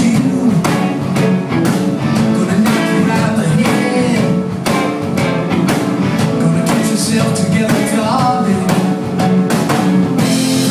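A live rock band playing, with electric guitars over a steady drum beat.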